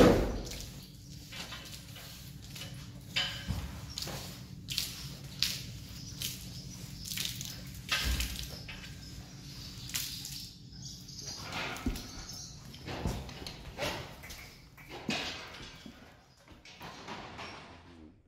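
Metal sweat scraper drawn again and again over a wet horse's coat, each stroke a short swish, with water dripping and splashing off the horse. A sharp knock right at the start.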